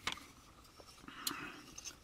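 Faint handling noise from a yellow plastic model-kit parts tree being turned over in the hands: a sharp click at the start, a softer click a little past a second in, and a light rustle between.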